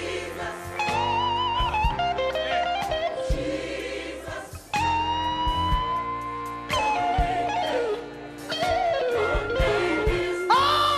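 Electric guitar solo over a gospel band's bass and drums. The guitar plays sustained, bent notes with wide vibrato, including one long held note that rises slowly in pitch around the middle.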